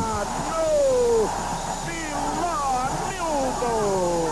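Football stadium crowd with voices shouting in long falling calls over a steady roar of crowd noise. A faint steady high whine runs underneath.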